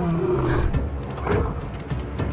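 A deep roar that rises and then falls in pitch, trailing off a moment in, followed by rougher growl-like bursts over a low rumble.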